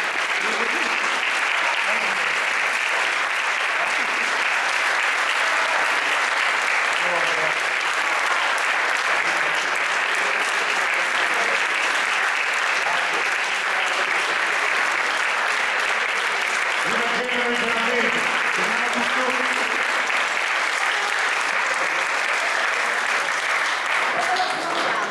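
An audience applauding in a long, steady round of clapping, with a few voices audible through it.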